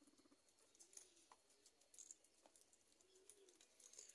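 Near silence with a few faint, low, arching cooing calls, like a dove's, and scattered faint soft ticks.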